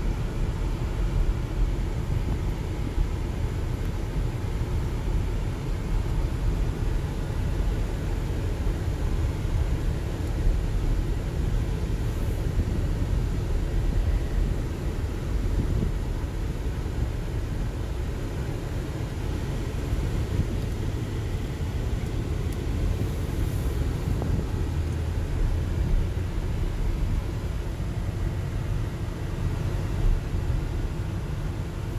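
Steady low rumble of a car driving along a residential street, its engine and tyre noise heard from inside the cabin.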